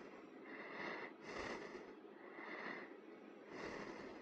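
A man's breathing close to the microphone, faint and regular, with a soft noisy breath about once a second.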